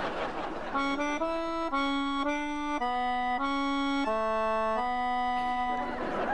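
Accordion playing a short phrase of held chords that change about every half second, coming in about a second in.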